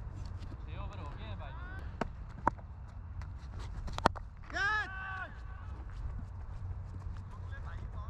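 A cricket bat striking the ball with one sharp crack about four seconds in, followed at once by a player's loud, drawn-out shout. Smaller knocks come earlier, over a steady low rumble.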